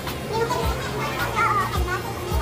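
Children's voices at play over background music with a steady low beat.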